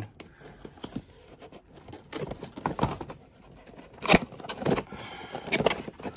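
Cardboard box being handled and turned over: the cardboard scrapes and rustles, with a few sharp taps, the loudest about four seconds in and again near the end.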